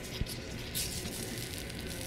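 Food sizzling as it fries in pans on a gas range, with a few light clicks of a ladle or utensil against the pans.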